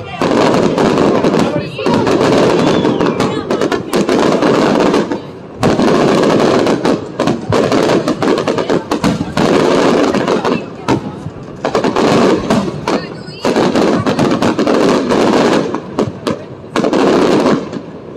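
Fireworks display: aerial shells and crackling charges going off in rapid, dense volleys. The volleys come in loud stretches of a few seconds with brief lulls between them and die away just before the end.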